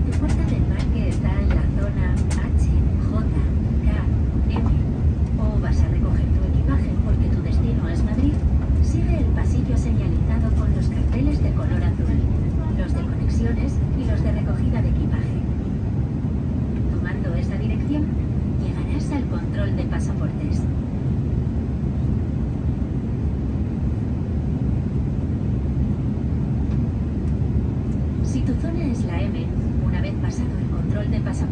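Steady low rumble of an Airbus A330's cabin noise during descent, engine and airflow noise heard from a passenger seat.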